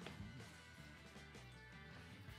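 Faint background music playing at low level, with no speech.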